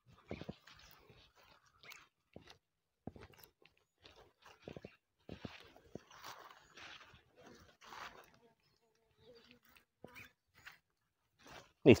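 Hands scraping and pressing loose soil and dry leaf litter around the base of a transplanted seedling: irregular soft crunches and rustles.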